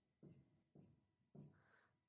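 Marker writing on a whiteboard: three short, faint strokes about half a second apart.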